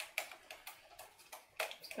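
Hands handling and pressing a paper zoetrope strip taped around a CD: a run of light, irregular clicks and taps.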